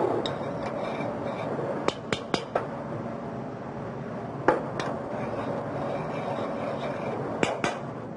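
Metal saucepans knocked and set down on a steel stovetop: a cluster of sharp clinks about two seconds in, one about halfway, and two more near the end, over steady background noise.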